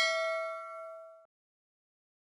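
A single ding from a notification-bell sound effect. The ring fades steadily, then cuts off abruptly a little over a second in.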